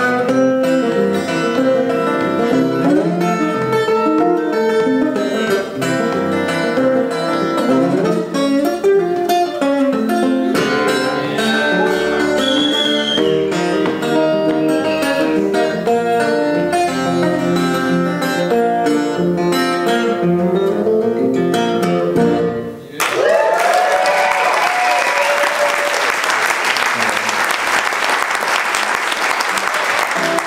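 Solo acoustic guitar playing a blues riff, ending about three-quarters of the way through, followed by audience applause and cheering.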